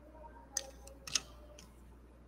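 Scissors snipping through a plastic drinking straw: two short, sharp snips a little over half a second apart, with a few fainter clicks of handling.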